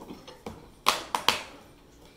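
Plastic latches of a dado blade set's carrying case snapping open: three sharp clicks in quick succession about a second in.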